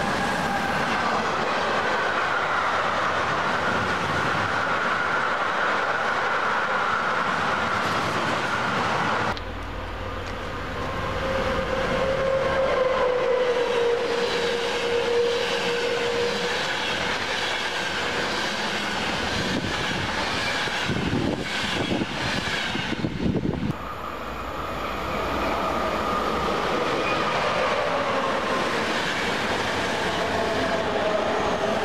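Electric-hauled trains passing close by on the main line: first a red DB electric locomotive pulling a car-carrier freight train, with a tone that slowly falls in pitch as it goes by. About nine seconds in the sound cuts abruptly to a loco-hauled passenger train of coaches rolling past, wheels clacking over rail joints.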